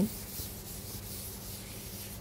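Chalk rubbing against a blackboard while writing: a continuous dry scraping, quiet and even.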